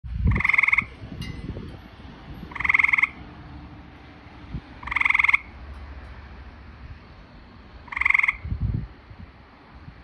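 A frog calling: four short, buzzy trilled calls about half a second each, repeated roughly every two and a half seconds.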